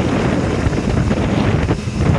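Wind buffeting the microphone in a loud, uneven low rumble, with the Ford F-150 Raptor SVT's 6.2-litre V8 idling beneath it.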